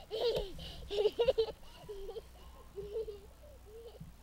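A young child laughing and babbling in a string of short bursts, loudest in the first second or so.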